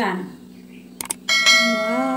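A single bright metallic ring, like a steel plate or utensil being struck, about a second and a half in, after two short clicks; it rings on and fades over about a second.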